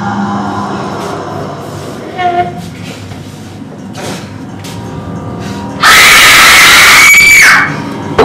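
An eerie held underscore drones, then about six seconds in a person's loud, high scream cuts through for nearly two seconds, rising slightly before it breaks off.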